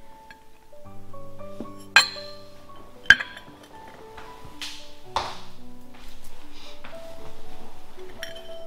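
Background music with steady tones throughout, and two sharp clinks of a ceramic bowl being set down on a ceramic plate, about two and three seconds in.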